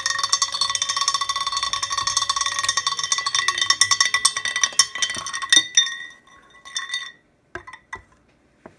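A magnetic stir bar that has spun off its magnets rattling fast against the bottom of a 1000 ml borosilicate glass beaker, the glass ringing with the strikes; the clatter stops about six seconds in, followed by a few light knocks. The bar was thrown because it was either not centred or the speed was turned up too much too quickly.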